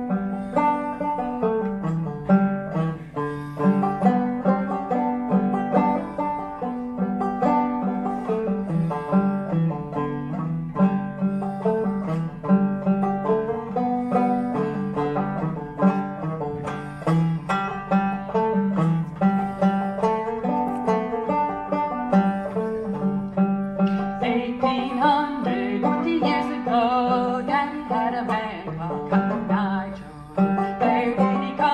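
Solo banjo played clawhammer style, an old-time tune in the Round Peak style, with a steady, even rhythm of plucked notes. The playing grows brighter near the end.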